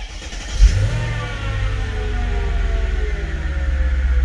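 Mercedes CLK500's M113 V8 engine starting: it catches with a loud flare of revs about half a second in, then the revs fall steadily as it settles toward idle.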